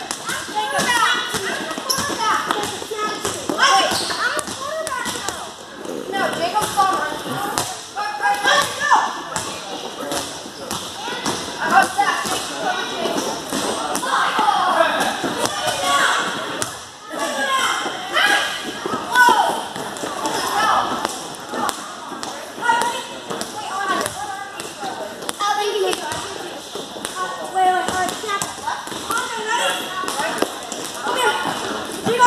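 Children's voices and shouts overlapping in a gym hall, with a ball bouncing and thudding on the floor now and then.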